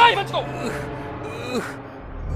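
An elderly man's pained vocal sounds: a sharp gasp at the start, then drawn-out moaning that fades.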